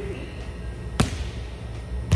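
A hand striking a volleyball once, about a second in: a single sharp slap as the ball is cut over the net in a roll shot, with a short echo after it.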